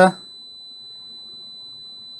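Kaiweets KM601 digital multimeter's continuity beeper sounding one steady high-pitched beep while its probes are on a 47 ohm resistor: the reading is low enough for the meter to signal continuity.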